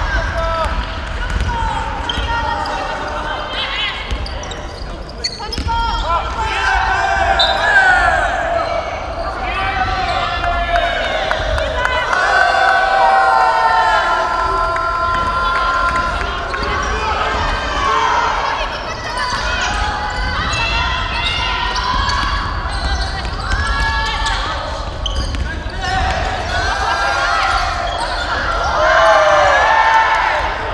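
Basketball dribbled on a hardwood gym floor, with players' voices calling out across the court.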